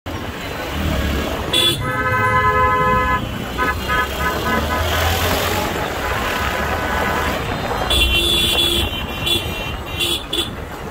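Vehicle horns honking in dense road traffic over the low engine and wind rumble of a moving motorcycle. One long horn blast comes about a second and a half in, then a quick string of about five short toots, and another horn sounds near the end.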